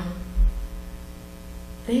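Steady electrical mains hum from the microphone and sound system, a buzz of many even tones, heard through a pause in speech. A single low thump about half a second in.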